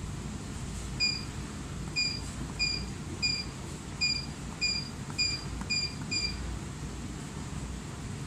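Touchscreen control panel of a Powerline washing machine beeping once for each key press as a password is entered: nine short, high beeps at irregular intervals over about five seconds. A steady low hum runs underneath.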